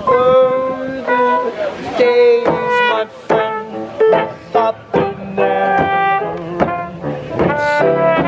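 A trumpet playing a melody of held and moving notes over an upright piano accompaniment, live in the open.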